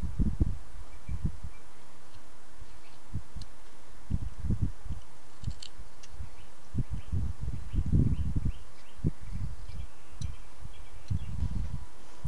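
Small carving knife paring wood from a hand-held wooden figure, with the hands handling the piece: irregular soft scrapes and knocks, and a few faint sharper ticks.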